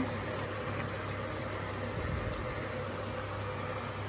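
Induction cooktop running under a pan, a steady fan hum and hiss.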